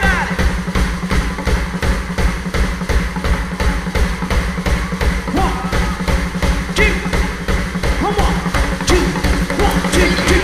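Live rock band heard through the soundboard mix: a steady drum-kit beat with heavy bass drum, and faint pitched sounds over it.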